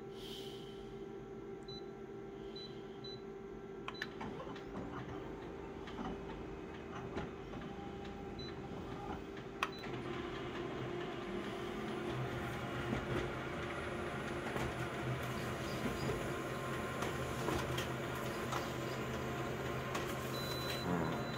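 Multifunction colour photocopier at work: a few short touchscreen beeps and clicks, then the machine running steadily, louder from about halfway through as it prints the copies.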